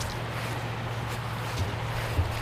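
Wet trap line being hauled hand over hand out of a pond, water dripping and trickling off it onto the surface, over a steady background hiss with a few faint ticks.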